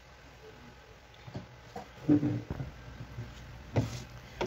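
A few light knocks and a short scuffing sound of a plastic cutting board and diced bacon being handled on a stone countertop, ending with one sharp knock as the board is gripped to be lifted.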